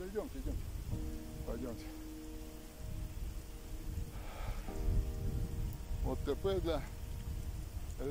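Wind rumbling on the microphone outdoors, with faint speech and soft held tones underneath.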